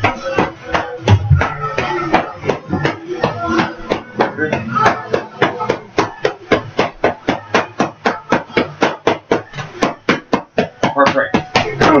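Boxing gloves smacking focus mitts in a rapid, steady run of punches, several a second.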